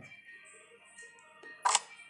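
A single short, sharp click about three-quarters of the way through, as a pawn is tapped and selected in a chess app on a phone.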